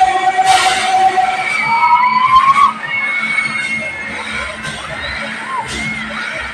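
Riders on a spinning fairground ride shouting and cheering together, with long held cries over a crowd din; the loudest cries die away about two and a half seconds in.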